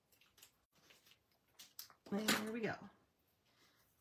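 Small scissors snipping thin paper, a handful of short, light clicks over about two seconds as a thin stem is fussy-cut out.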